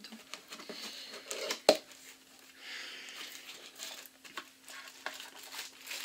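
A boxed mug being unpacked by hand: scattered clicks and rustling of the cardboard and packaging, with one sharp knock a little under two seconds in.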